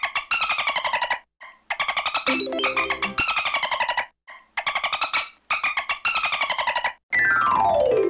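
Synthesized music: short, buzzy bursts of rapid chirping notes, roughly one a second with brief gaps, each sliding slightly down in pitch. Near the end comes a long falling glide.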